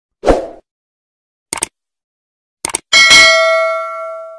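Subscribe-button animation sound effects: a short pop, two brief clicks, then a bell ding about three seconds in that rings out and fades.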